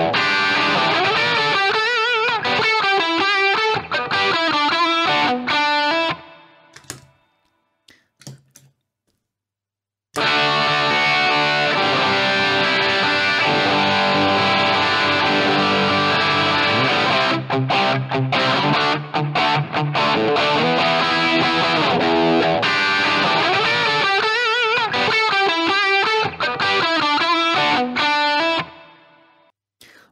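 Looped electric guitar phrase played through an Ibanez Tube Screamer Mini overdrive pedal with its gain at zero and tone fully up; it stops about six seconds in. After a few seconds of near silence, the same loop plays again from about ten seconds in, through a DigiTech Bad Monkey overdrive with its gain at zero and high control fully up, and fades out near the end.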